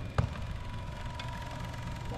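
Jugs football passing machine running between throws, its motor-driven wheels giving a steady high hum, with a single knock shortly after the start.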